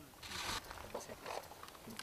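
A short sliding rasp about half a second in, as the rifle's parts are worked by hand, with a few small clicks after it.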